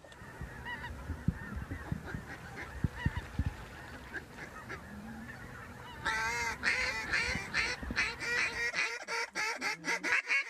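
Hunters blowing waterfowl calls: after several seconds of low thumping and faint calling, a loud, rapid run of pitch-bending calls starts about six seconds in and keeps going.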